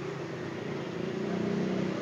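A vehicle engine running, heard as a steady low hum.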